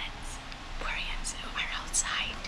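Whispered speech.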